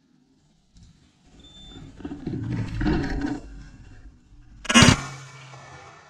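Rustling movement through brush, then a single loud shotgun shot at a woodcock about five seconds in, its report trailing off afterwards.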